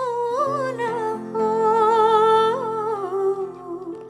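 A woman humming a wordless melody with vibrato, accompanied by a nylon-string classical guitar; the phrase drops in pitch and fades near the end.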